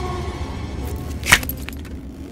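A low, dark film-score drone, then about a second in a single sharp metallic clank with a brief ringing rattle after it, like a metal shackle or chain.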